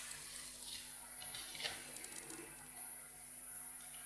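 A steady high-pitched whine held at one unchanging pitch, with a few faint rustles in the first two seconds.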